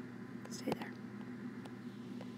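A short, quiet breathy vocal sound with a small knock about three-quarters of a second in, over a steady low electrical hum.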